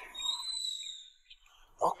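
A bird's single high, steady whistled note, held about a second.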